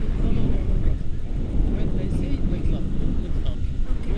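Steady wind buffeting on the microphone of a camera carried on a paraglider in flight, a loud continuous low rumble.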